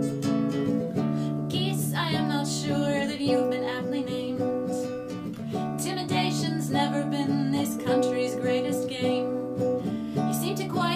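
A nylon-string acoustic guitar strummed in a steady rhythm, with a woman's singing over it that includes two long held notes.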